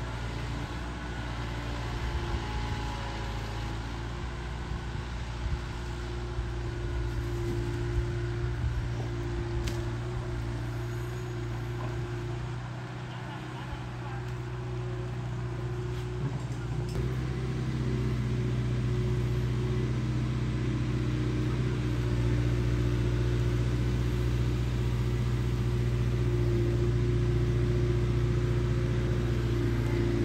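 Long-reach excavator's diesel engine running steadily while the boom is worked, a little louder in the last third.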